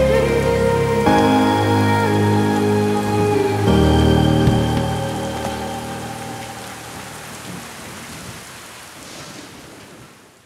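Rain falling steadily under the last held synth chords of an electronic song, the music fading out over the second half.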